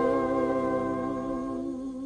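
Orchestral music from a 1959 Neapolitan song record: a long held chord that fades away over the second half.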